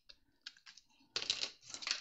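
A few light clicks and taps of small hard objects being handled and moved on a desk, growing busier after about a second, with a short spoken "yeah".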